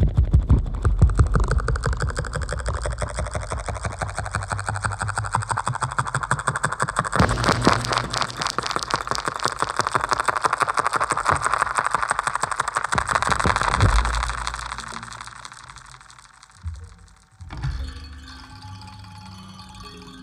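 Live homemade techno played on piezo-amplified DIY instruments such as spring boxes and wire strings: a fast pulsing rhythm over a deep beat. From about seven seconds a buzzing layer builds, then fades out over a few seconds. A couple of thumps follow, and then a quieter, sparser texture near the end.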